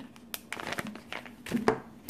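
Clear plastic packaging of wax melts crinkling as it is handled, in irregular crackles, the sharpest one near the end.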